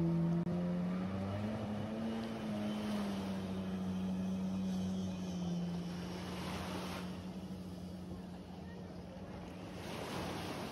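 Jet ski engine running at speed: its pitch rises, peaks about two seconds in, then eases down into a steady drone as the craft moves off across the water.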